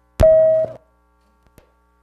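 Meeting-room sound system glitching: a loud pop followed by a steady electronic tone of about half a second that cuts off suddenly, then two faint clicks. The noise comes from a sound-system technical difficulty.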